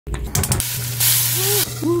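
A few clicks as the lever of a gas pipe's valve is turned, then a steady low hum sets in. A hiss lasts about half a second, and a man's voice says 'ohoho' near the end.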